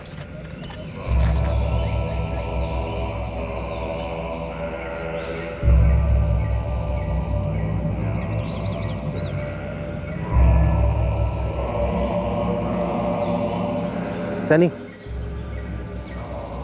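Dramatic background score of sustained low drones under layered held tones, surging three times and fading slowly after each surge.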